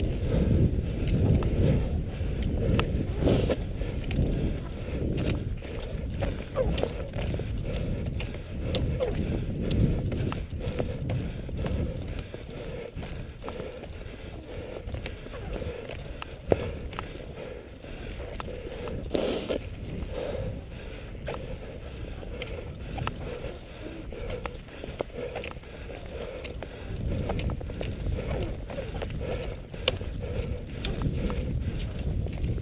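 Cross-country skis swishing over a snow-covered track and ski poles planting, under a low rumble on the camera's microphone. It is louder for about the first ten seconds and again near the end.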